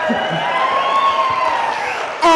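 Audience cheering, with a long whoop that rises and falls over about a second and a half above the crowd noise.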